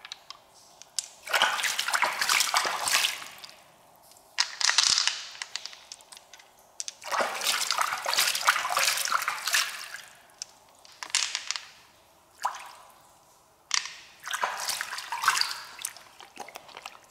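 Wet squelching of freshwater mussel flesh being squeezed and picked apart by hand to free pearls, in bursts of one to three seconds. A few sharp clicks come from pearls knocking against the shell.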